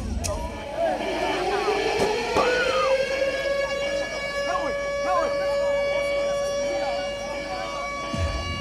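Siren sound effect played over stage PA speakers: a wail that rises in pitch over about three seconds, then holds one steady tone with many overtones.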